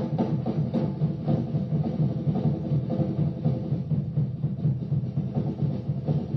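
Audience recording of a live jazz-rock band with drums and percussion to the fore: a dense, fast-pulsing groove, heavy in the low end.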